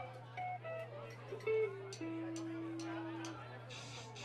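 A few scattered single notes picked on an electric guitar, one of them held for about a second, over a steady low amplifier hum.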